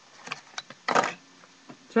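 Objects being handled and picked up: a few small clicks, then one brief, louder rustle about a second in.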